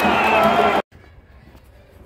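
Loud stadium football crowd, many voices shouting and singing together, cut off abruptly less than a second in and replaced by a quiet outdoor background.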